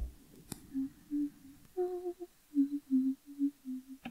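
A woman humming a slow tune in short, low, steady notes, one phrase stepping higher in the middle. There is a single sharp click about half a second in.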